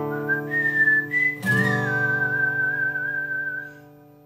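Whistled melody over acoustic guitar chords. A chord strummed about a second and a half in rings on under a long held whistled note, and both fade out near the end as the song closes.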